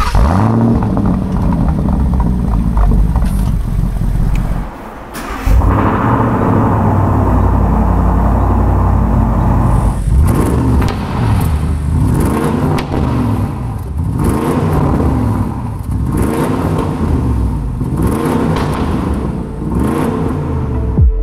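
Mansory Range Rover SV's 4.4-litre V8 running, heard at the exhaust. There is a short dip about five seconds in. From about halfway there is a series of throttle blips, each rev rising and falling, about one every second and a half.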